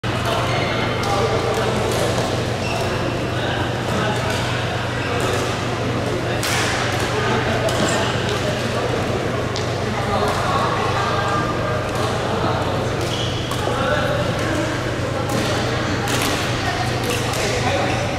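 Badminton rackets hitting a shuttlecock with sharp smacks every second or two through a rally, over background voices and a steady low hum in a large hall.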